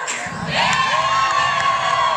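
Bagpipes striking up: the low drones come in just after the start, then the chanter holds one long, steady high note with brief grace-note flicks.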